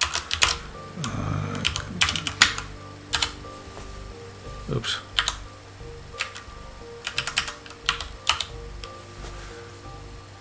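Computer keyboard typing: irregular key clicks, some single and some in short quick runs.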